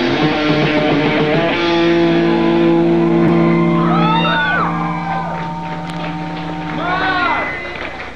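Live punk band's electric guitar holding a ringing chord, with two swooping rise-and-fall pitched wails over it, about four and seven seconds in. The sound thins out and drops near the end.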